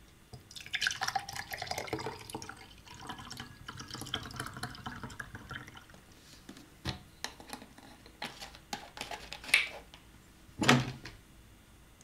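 Juice pouring from a carton into a drinking glass for about the first six seconds. Then a few light taps and a louder knock near the end as the carton and glass are handled.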